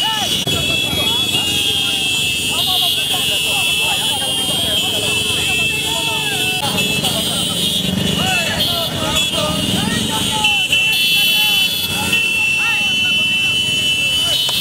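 A large crowd on motorcycles: many engines running and many voices shouting and calling over them, with a steady shrill tone above. The low engine rumble swells about seven to ten seconds in.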